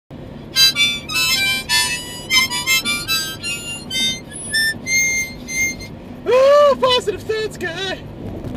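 A small harmonica played in a quick run of short, separate high notes for about six seconds, which the player himself calls annoying. About six seconds in, it gives way to a loud, sliding vocal exclamation.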